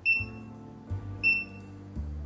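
Two short, high electronic beeps about a second apart from the Waldent EndoPro Smart Touch endomotor's touchscreen as its menu options are tapped, over background music with a steady bass.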